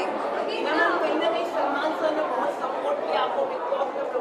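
Chatter of several people talking at once, a steady babble of voices with no single clear speaker.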